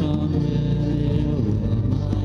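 A man singing to his own strummed acoustic guitar, holding the sung notes.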